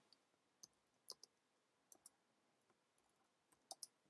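A few faint computer keyboard keystrokes, single clicks scattered over several seconds with near silence between them.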